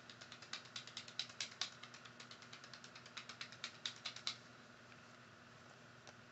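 Buttons pressed over and over in quick, irregular clicks, about eight or nine a second, as an ASMR trigger. The clicking stops about four seconds in.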